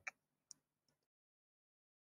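Near silence, with a faint brief click about half a second in; after about a second the sound track goes completely silent.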